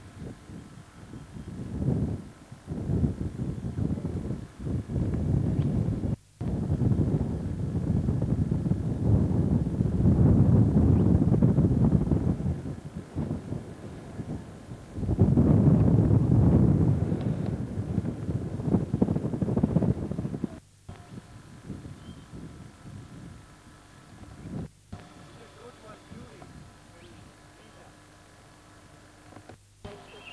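Wind buffeting the camcorder microphone in strong, uneven gusts, loudest in two long surges through the middle, with a few abrupt breaks where the recording cuts. It dies down to a low rumble near the end.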